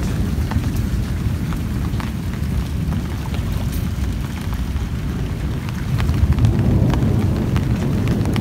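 Heavy rain pouring onto corrugated metal roof sheets: a dense, steady hiss with a deep low rumble and scattered small ticks, swelling slightly about six seconds in.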